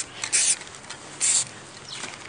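Aerosol spray-paint can hissing in two short bursts, about a quarter second in and again just past a second in, as black paint is sprayed onto a rough wall.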